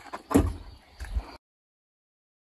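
Hinged side window hatch of a horse lorry being swung open: a loud clunk about a third of a second in and a second knock about a second in. The sound then cuts out abruptly.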